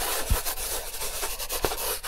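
Sketching sound effect: a pencil scratching rapidly back and forth across paper, a steady rough scratching with a couple of soft knocks.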